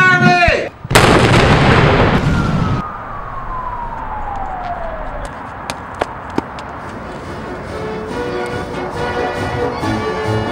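A cannon fires about a second in: one loud boom that dies away over about two seconds. A whistle follows, falling steadily in pitch over about three seconds, then a few sharp knocks, and music comes in near the end.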